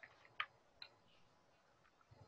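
Near silence: quiet room tone with a few faint ticks, the clearest about half a second in and another just before one second in.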